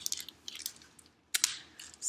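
A book being handled and opened close to the microphone. Its pages and cover rustle and crackle in a run of short noises, with a sharper crackle a little over a second in.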